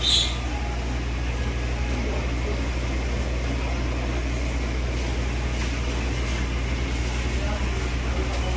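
Busy shop ambience: a steady low hum under a faint murmur of distant voices, with a brief high chirp right at the start.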